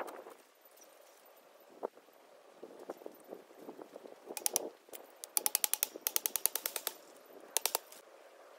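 Metal clicking from work on a welded-wire mesh fence: scattered sharp clicks, then a fast, even run of clicks, about ten a second, for a second and a half past the middle, and a short burst of louder clicks near the end.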